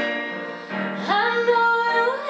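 A girl singing solo over a piano karaoke backing track; her voice comes in about two-thirds of a second in and slides up into a held note.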